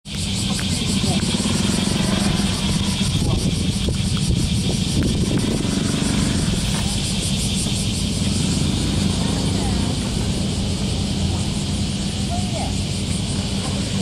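Loud, steady outdoor noise: a low rumble under a steady high hiss, with faint distant voices.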